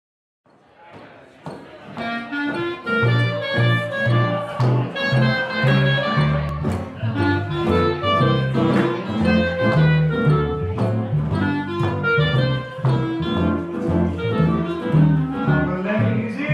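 Small swing-jazz band playing, a clarinet carrying the melody over double bass notes; the music fades in over the first couple of seconds.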